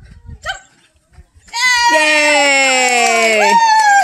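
A dog giving a loud, long, drawn-out howling whine that falls slowly in pitch, about two seconds long, then starting a second one just before the end: excited greeting vocalizing as it jumps up on its owner.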